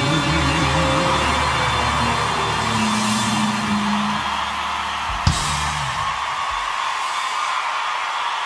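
A live band's music dying away at the end of a song over a large crowd cheering. A single loud bang comes about five seconds in, after which the low instruments stop and the cheering carries on.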